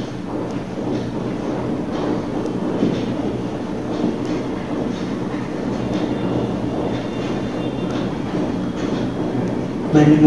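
A steady low rumble of background noise, with faint scratchy strokes of a marker writing on a whiteboard and a brief thin squeak about six seconds in.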